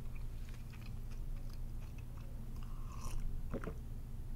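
Close-miked mouth sounds of chewing and swallowing: soft, wet clicks at a low level, with one brief louder sound about three and a half seconds in.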